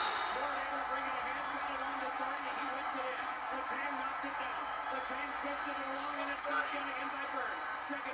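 Television broadcast of an NHL hockey game heard through the TV speaker across the room: a play-by-play commentator's voice over steady arena crowd noise.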